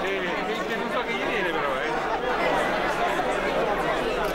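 A large, tightly packed crowd talking all at once: a steady din of many overlapping voices.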